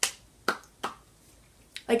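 Three short sharp clicks in the first second, about half a second apart, with a fainter one near the end.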